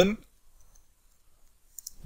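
Faint computer keyboard keystrokes as a command is typed, mostly a quick cluster of a few clicks near the end, with quiet in between.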